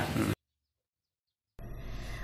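The tail of a man's voice cut off abruptly about a third of a second in, then about a second of dead silence, then faint outdoor background hiss at an edit.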